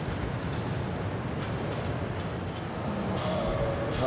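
Casters of a wheeled stool rolling across a polished concrete floor, a steady rolling rumble.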